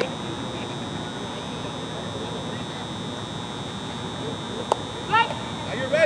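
Open-air ambience of a softball field, a steady wash of background noise with a constant high-pitched whine. One sharp crack comes near the end, followed by a short shout.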